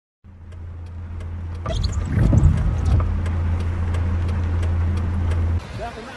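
A vehicle's engine running with a steady low hum, as rushing floodwater comes in about two seconds in and stays loud. The sound cuts off suddenly shortly before the end.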